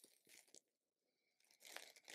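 Near silence, with a few faint soft ticks and rustles at the start and a stretch of dead silence in the middle.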